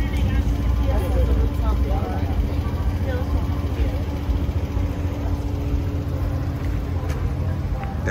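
Passenger van engine running with a steady low rumble and a constant hum.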